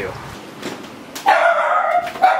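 Small black curly-coated dog barking, one long, drawn-out bark starting about a second in.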